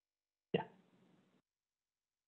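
Near silence broken about half a second in by one brief, clipped voice sound that starts sharply and fades quickly.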